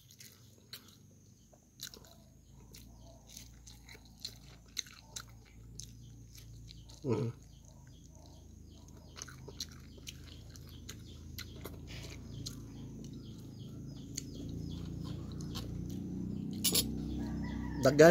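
A person chewing and biting raw habanero chili peppers: soft, irregular crunches and wet mouth clicks, several a second. A low hum grows louder over the second half.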